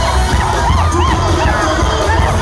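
Large stadium crowd cheering and shouting, many voices rising and falling, over loud live music with a heavy bass.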